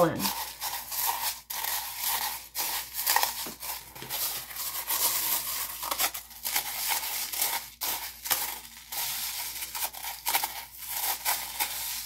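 Crushed glass being stirred with a wooden stir stick in a plastic cup while alcohol ink is mixed in to colour it: a continuous gritty scraping with irregular small clicks.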